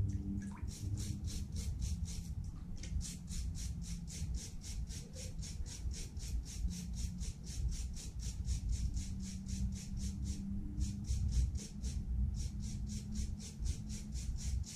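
A small hand brush scrubbing a freshly cast aluminium skull pendant, cleaning up the casting. It goes in quick, even strokes of about four a second, with two short pauses.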